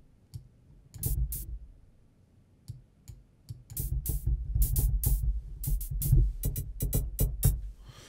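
Synthesized hi-hat patch on a subtractive synth (white noise through a high-pass filter over square and saw oscillators) played as short bright ticks: two about a second in, then a quick run of hits from about four seconds until near the end, with a low rumble beneath them. The patch is still being shaped and only starting to sound like a hi-hat.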